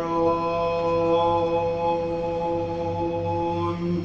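Unaccompanied man singing, holding one long unwavering note of a folk dirge that breaks off near the end.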